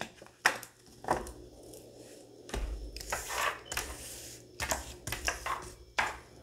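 Tarot cards being handled on a table: scattered light taps and clicks, with a soft rustle of cards about halfway through.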